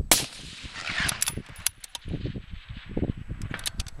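A single shot from a scoped .308 rifle right at the start, its report rolling away for about a second, then a few faint light clicks.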